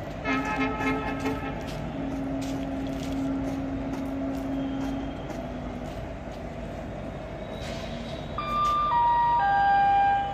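Railway platform background with a low horn-like tone, first in short pulses and then held for about three seconds. Near the end comes a descending three-note electronic chime, the loudest sound here: the Indian Railways public-address chime that comes before an automated train announcement.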